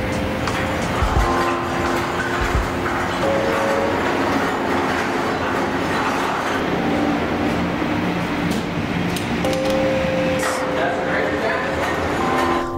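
Background music of sustained chords that change every few seconds, over a steady rushing noise, with a few low knocks in the first few seconds.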